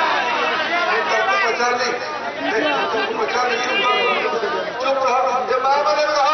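Speech only: a man giving a speech into a microphone.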